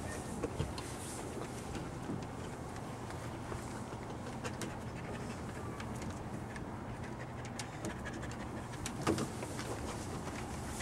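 A dog panting steadily, with light scattered clicks of its claws on a metal mesh deck.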